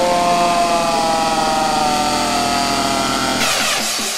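Breakdown in a hardcore techno track with no kick drum: a buzzy, distorted synth chord glides slowly down in pitch. A rising noise sweep comes in about three and a half seconds in.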